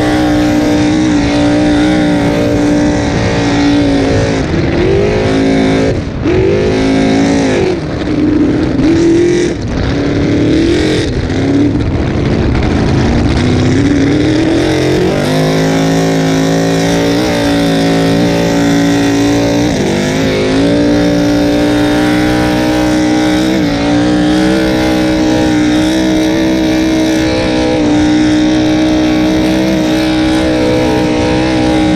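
Open-header racing boat engine running hard, loud, with water and wind rushing past the hull. From about four to twelve seconds in, the revs drop and climb again several times. From about fifteen seconds in the engine holds a steady high pitch with only brief dips.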